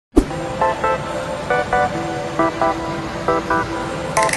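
A sharp click at the start. Then short horn-like toots in quick pairs, repeating about once a second over a steady background noise.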